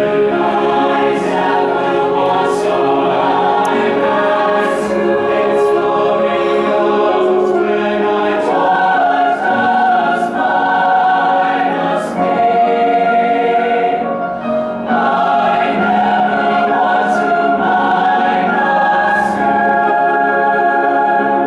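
A large mixed choir singing sustained chords, with a short break in the sound about fifteen seconds in before the voices come back in.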